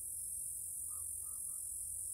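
Quiet, steady high-pitched chirring of crickets, with three faint short tones about halfway through.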